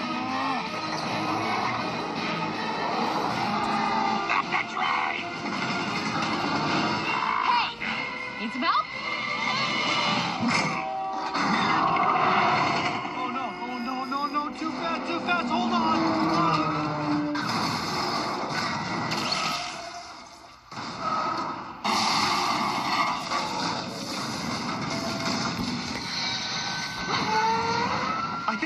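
An action film soundtrack: music and train noise with short shouted lines over them. The mix drops away briefly about three-quarters of the way through, then comes back loud all at once.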